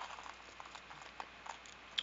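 Quiet room background with a few faint, short clicks, one just after the start and two more around a second and a half in.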